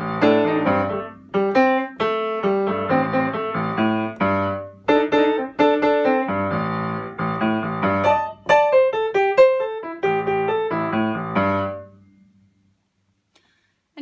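Solo piano improvising a bluesy jazz line in A blues, the right hand working a short groovy riff from the tune over a repeating left-hand bass line. The playing stops about two seconds before the end.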